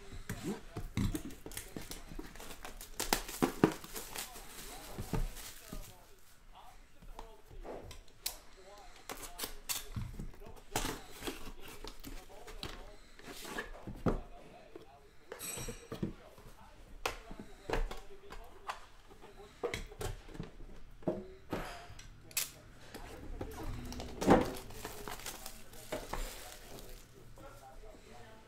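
Plastic shrink-wrap crinkling and tearing off a sealed trading-card box, with scattered clicks and knocks as the cardboard box and the metal tin inside it are handled; one sharper knock comes late on.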